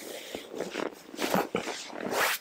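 A person breathing out hard in noisy puffs, on cue, during a chiropractic thoracic spine adjustment, the strongest puff near the end as the thrust comes. A couple of faint clicks in the first second.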